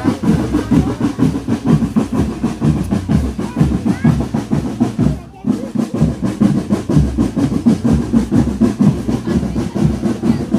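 Marching drum band playing a fast, dense drum rhythm, with a brief break about five seconds in.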